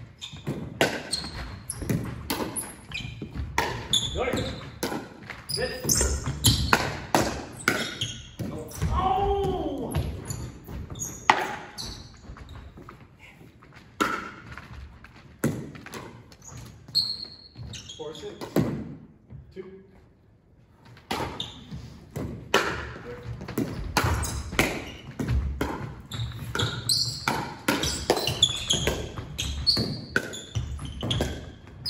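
Pickleball play in a gymnasium: sharp pops of paddles hitting the plastic ball and the ball bouncing on the hardwood floor, echoing in the hall, with a short lull about two-thirds of the way through.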